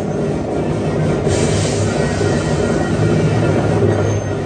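Film soundtrack playing from a television: music with a steady clattering, rushing noise that grows louder about a second in.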